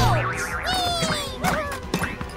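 Cartoon boing sound effects for bouncing toy balls, heard as falling pitch glides over background music.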